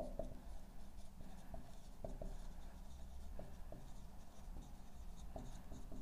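Marker pen writing on a whiteboard: faint, irregular short squeaks and taps of the felt tip as letters are drawn.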